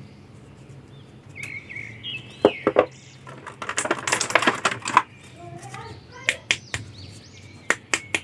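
Thin clear plastic blister tray crinkling and clicking as small plastic action figures are handled and pulled out of it: a string of sharp clicks, busiest about four seconds in. Birds chirp faintly in the background.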